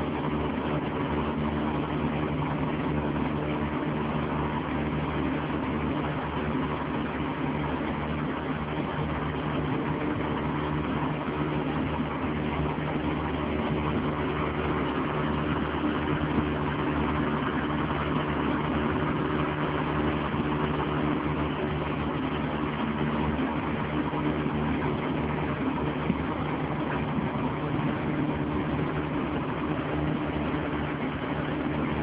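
Small motorboat's engine running steadily at constant cruising speed, with a continuous rush of water and air as the boat moves along the river.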